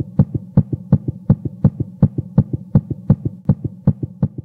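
Heartbeat sound effect: a fast, even run of short thuds, about three a second, over a steady low hum.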